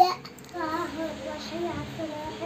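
A young child's sing-song voice, opening with a short loud shout and then carrying on in drawn-out, pitch-varying tones.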